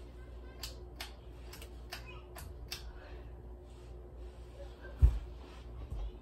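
Harbor Breeze Bella Vista ceiling fan running on medium with a steady low hum, its loose blade ticking sharply about twice a second for the first three seconds. A single loud thump about five seconds in.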